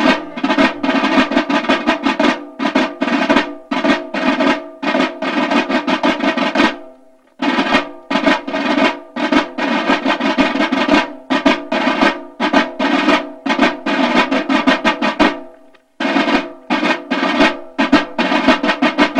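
Military side drums beating a rapid marching roll, breaking off briefly twice, about seven seconds in and again near the end.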